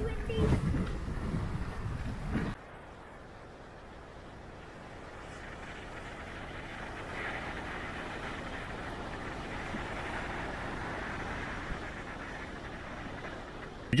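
Wind buffeting the microphone with a low rumble for about the first two and a half seconds, then a sudden cut to a quieter, steady hiss of wind and surf that slowly swells.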